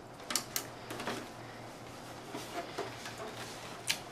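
A few light clicks and knocks from a small plastic NAS enclosure being handled and turned over in the hands, mostly in the first second and once more near the end, over a faint steady room hum.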